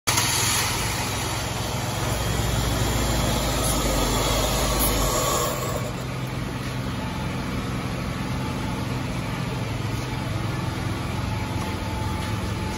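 A 2006 Ford Focus's four-cylinder engine idling steadily. It is louder for about the first five seconds, then settles to a slightly quieter, even idle.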